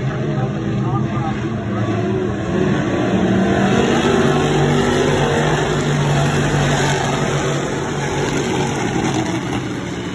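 A pack of dirt-track sportsman modified race cars running at speed around the track, their V8 engines in a continuous racing din that grows louder a few seconds in and peaks through the middle as a car passes close, then eases near the end.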